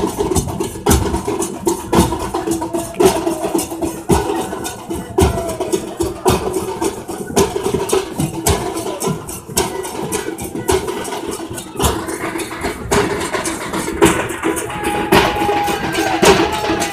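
Several large barrel drums and big frame drums beaten with sticks in a fast, dense, continuous rhythm, with crowd noise underneath.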